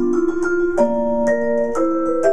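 Solo vibraphone playing slow chords: several notes struck together and left ringing, with new notes entering about every half second.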